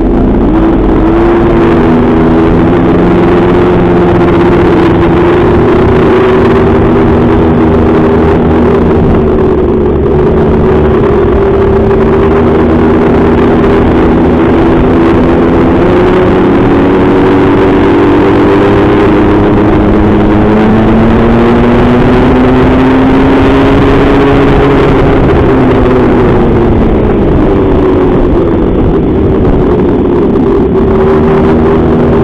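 A small mini-motorcycle engine running continuously under way, loud on the onboard camera, its pitch wandering slowly up and down as the throttle changes.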